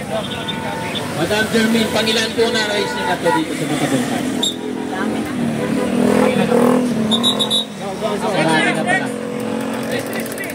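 Several people talking in the open, with a motor vehicle engine running under the voices.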